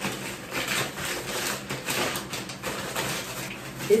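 Brown kraft paper crinkling and rustling in irregular bursts as a wrapped package is pulled open by hand.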